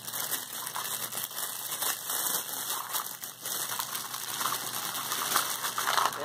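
A plastic packaging bag rustling as it is opened and handled, a dense run of small crackles.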